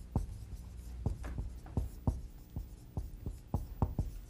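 Handwriting with a pen: a quick, irregular series of short taps and scratches as symbols are written out, over a faint low hum.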